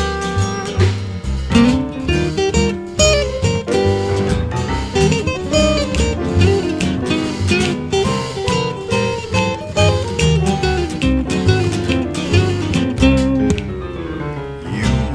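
Instrumental break of an acoustic jazz band: plucked acoustic guitar leading over string bass and percussion.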